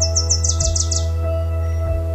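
Ambient background music of sustained tones with a soft low beat, over which a bird gives a rapid run of high chirps falling in pitch that stops about a second in.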